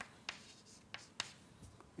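Chalk writing on a blackboard: a handful of faint taps and short strokes, the sharpest about a second in.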